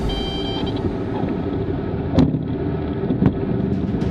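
Cessna 340A twin piston engines and airframe rumbling in the cockpit as the aircraft rolls along the runway, with two sharp thumps about two and three seconds in.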